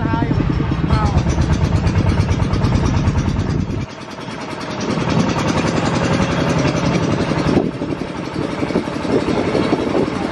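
Small farm tractor's engine running under load with a fast, even chugging pulse. It eases off about four seconds in, with the deep rumble dropping away, and picks up again a second later.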